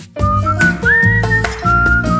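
Instrumental break in a Slovak folk-pop song: a whistled melody, clear single notes with small slides between them, over guitar accompaniment.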